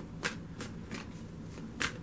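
A deck of large tarot cards shuffled by hand: a soft rustle of cards sliding over one another, with a short flick just after the start and a sharper one near the end.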